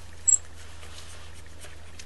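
A single short, high-pitched squeak about a third of a second in, from a clay blade pressed against polymer clay on a ceramic tile. Otherwise only a faint steady hum.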